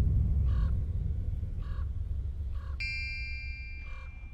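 A low rumble fading slowly, with a bird cawing four times about a second apart. A bright chime rings out about three seconds in.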